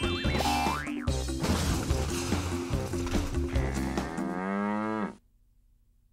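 Bouncy children's cartoon music with a rising glide about a second in. Near the end a cartoon cow gives one long moo that falls in pitch, and the sound then cuts off suddenly.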